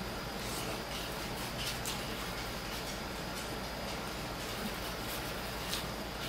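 Instant ramen noodles being slurped and eaten close to the microphone: a few short, sharp mouth sounds scattered over a steady background hiss.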